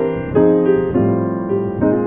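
Grand piano playing jazz chords in the key of E-flat, a C7 over E moving to a B-flat 7 sus. A new chord is struck about a third of a second in and another near the end, each left to ring.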